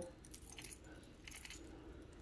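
Faint, light clinking of hanging metal chain links being touched by hand: a few soft scattered ticks over quiet room tone.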